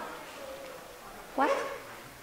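A single short spoken word amid quiet lecture-hall room tone.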